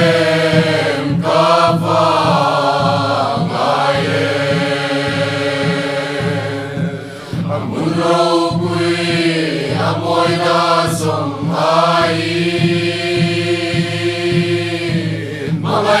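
Small mixed choir of men and women singing a Mizo gospel song in harmony, in long held phrases with a brief breath pause about seven seconds in.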